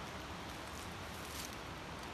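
Steady outdoor background hiss, with a faint brief rustle about a second and a half in.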